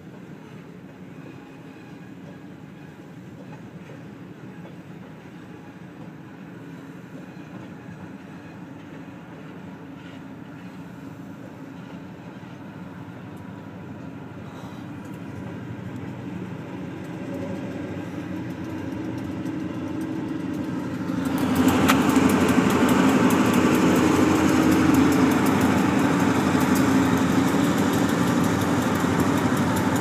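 Ohio Central freight train's diesel locomotive running and its freight cars rolling past, heard from inside a car, with a steady low engine drone that slowly grows louder. About two-thirds of the way through the sound suddenly becomes much louder and fuller.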